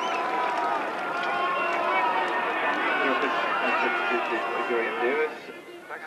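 Rugby crowd clapping and calling out, many voices at once, falling away suddenly about five seconds in.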